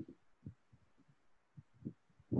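Near silence in a pause of speech, with a few faint, short low sounds.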